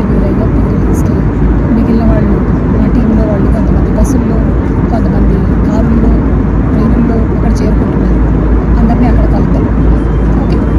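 Steady cabin noise inside a passenger jet airliner: the engines and airflow make a constant loud rumble, with faint voices underneath.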